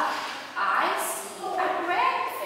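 A woman speaking, in words the transcript does not catch.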